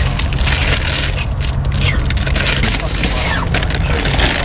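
A plastic shopping bag rustles and crinkles as hands rummage through it and pull out a bag of chips. Under it runs a steady low rumble of wind buffeting the microphone.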